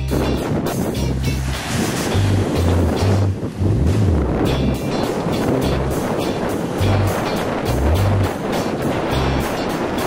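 Steady roar of strong wind and breaking surf, with soundtrack music and a plucked bass line underneath.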